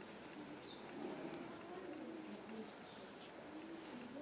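Faint, low bird cooing in the background, a few wavering calls, over quiet room tone.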